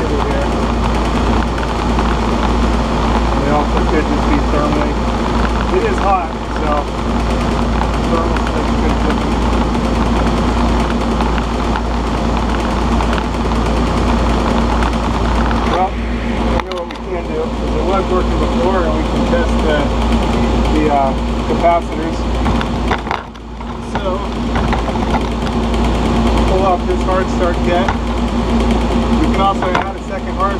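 A steady low machine hum, with faint, indistinct voice-like sounds over it.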